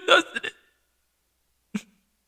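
A man's voice: the end of a laugh in the first half-second, then one short hiccup-like catch of breath near the end.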